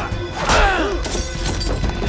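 Glass shattering once, about half a second in, over a film's orchestral action score.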